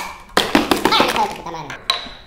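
A small hammer striking a large hollow chocolate egg and cracking its shell: a sudden hit about a third of a second in, then a quick run of sharp cracks as the chocolate breaks, and one more sharp tap near the end.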